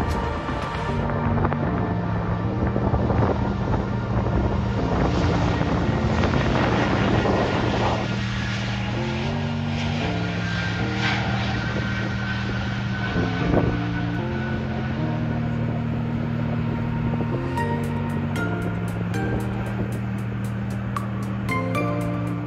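Background music with sustained low chords that change every second or two. Underneath it is the rushing noise of an Airbus A220's geared turbofan engines at takeoff power as the jet rolls down a wet runway and climbs away, strongest in the first half.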